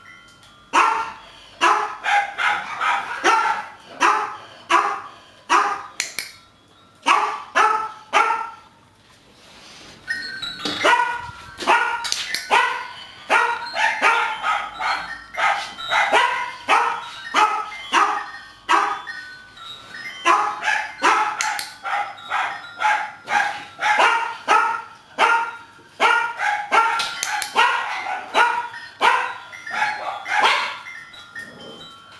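Small terrier-type dog barking over and over, about two sharp barks a second, with a short break about a third of the way in.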